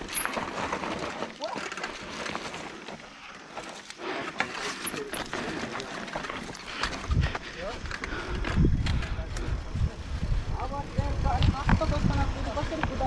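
Mountain bike rolling over loose, stony dirt, with the tyres crunching and the frame and parts rattling in many small clicks and knocks. From about seven seconds in, wind buffets the microphone.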